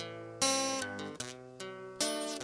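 Instrumental music: acoustic guitar strumming chords, with a strong strum about half a second in.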